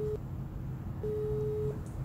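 Telephone ringback tone while a call is connecting. A steady single-pitched beep ends just after the start and sounds again from about a second in for under a second.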